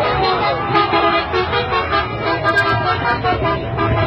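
A bus horn sounding, with music and voices around it.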